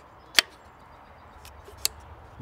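Two sharp clicks from the parts of a handcrafted wooden puzzle as they are handled: a loud one about half a second in and a fainter one near the end.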